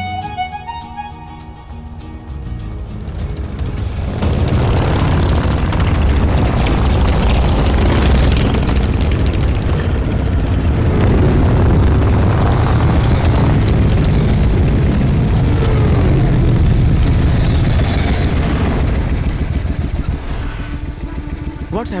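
A group of motorcycles riding up, their engines running loud from about four seconds in and easing off near the end, over the film's background music.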